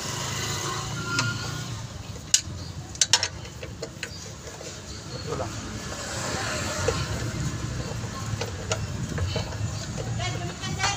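Wrench work on clutch pressure-plate bolts: a few sharp metallic clicks, two close together about three seconds in and another near the end, over a steady low rumble.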